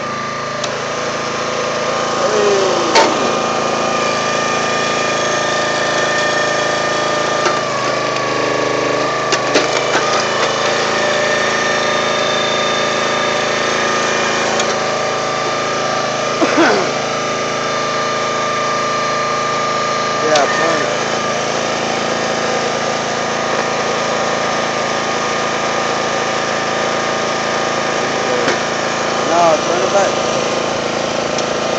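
Small gasoline engine running steadily on a log splitter, with a constant whine. A few short creaks and cracks come through at moments as wood splits.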